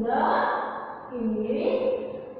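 A woman speaking in two short, breathy phrases.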